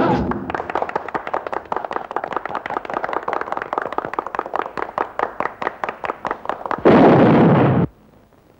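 Film sound effects: a rapid run of sharp pops, about six a second, followed near the end by a loud rushing blast lasting about a second that cuts off suddenly, the blast of a smoke-bomb effect.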